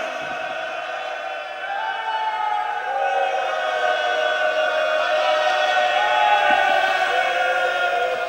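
Several voices of a majlis gathering chanting together in long, slowly drawn-out notes, with more voices joining and the sound growing a little louder about two seconds in.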